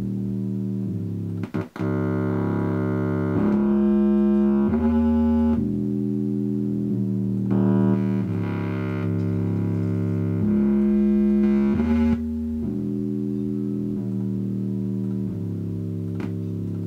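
Nord Lead synthesizer playing sustained chords that change every second or two. There is a brief break about a second and a half in, and several passages are louder and brighter.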